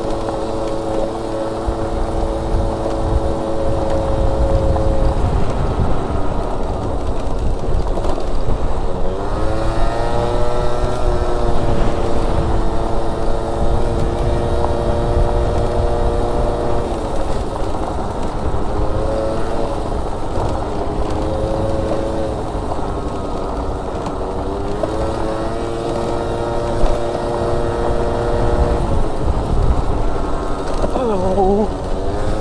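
Gilera Stalker 50 cc two-stroke scooter engine running at high revs on a bumpy dirt track. Its pitch drops as the throttle eases a few times, then climbs again, about ten seconds in and again near twenty-five seconds. It runs over a heavy low rumble of wind and bumps.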